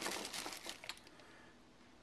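Thin clear plastic bag crinkling and rustling as a hand rummages in it and pulls out a pepper; the crackle lasts about a second, then dies away.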